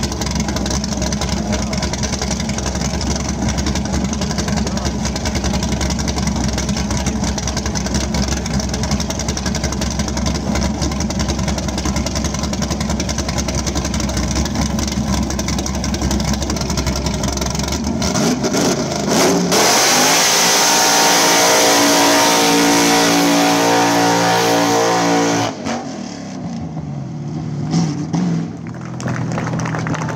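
A car doing a long burnout: its engine is held at high revs while the rear tyres spin on the line. After about 18 seconds the sound changes to the engine pulling up through its revs as the car drives off, cut off suddenly near the 25-second mark. A quieter engine note runs on to the end.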